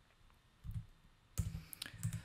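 A few computer keyboard key clicks, soft and close, starting about a second and a half in after a near-silent pause with one faint low thud.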